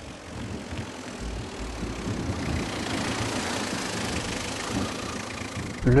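Renault Kangoo van driving on a dirt track: engine running under steady road and tyre noise, growing louder over the first two or three seconds and then holding steady.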